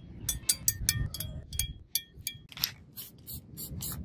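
Quick light metallic clinks from small steel pieces, each with a short ringing, about a dozen in the first two and a half seconds. A run of short hissing scrapes follows.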